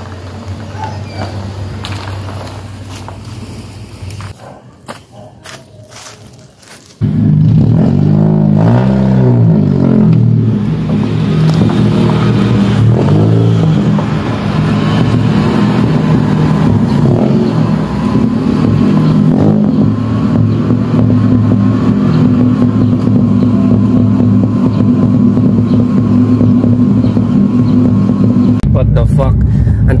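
Car engine running: a low steady idle hum fades out about four seconds in. About seven seconds in, a much louder engine sound cuts in, its pitch wavering for a few seconds before settling into a steady idle.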